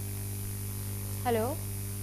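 Steady electrical mains hum, one low even tone, with a single spoken "hello" over it about a second in.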